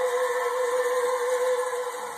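A singing voice holding one long, steady high note that fades a little near the end.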